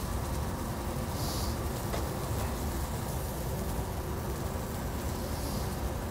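Sockeye salmon fillet searing in a little oil in a hot copper pan: a steady sizzle over a low, even rumble.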